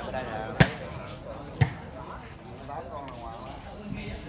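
A volleyball struck by hand twice, about a second apart, two sharp hits in a rally, with onlookers' voices chattering in the background.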